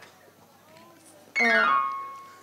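A single sustained musical tone with rich overtones, like an electronic keyboard note, starts suddenly about a second and a half in and fades away.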